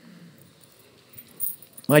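Coins jingling inside a cloth sock as it is picked up, a brief jingle about a second and a half in; a man starts to speak at the very end.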